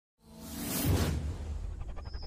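Intro sound effect for a logo reveal: a swoosh swells in out of silence and peaks about a second in, over a deep bass rumble, then a quick run of ticks follows near the end.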